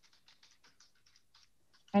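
Faint typing on a computer keyboard: quick, irregular key clicks, several a second.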